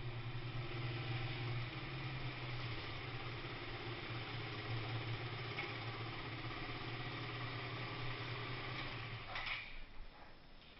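Beta 200 trail motorcycle's engine running steadily at idle, heard close up from the bike, then shut off about nine and a half seconds in.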